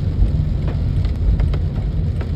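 Inside a car driving in the rain: a steady low rumble of road and engine noise, with a few faint ticks of rain hitting the car.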